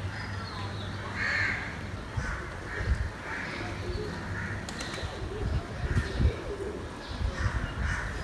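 Crows cawing repeatedly over a quiet, traffic-free street, with a few low thumps on the microphone around the middle.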